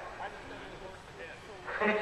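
A lull with faint background voices, then a man's voice starting up again near the end.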